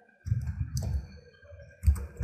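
Computer keyboard typing in two short bursts of keystrokes, a quarter second in and again near the end.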